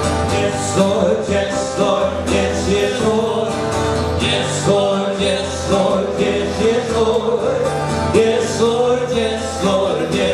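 A man singing a country-style song to his own strummed acoustic guitar, with a steady strumming rhythm.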